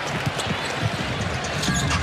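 Basketball dribbled on a hardwood court, a string of bounces over steady arena crowd noise.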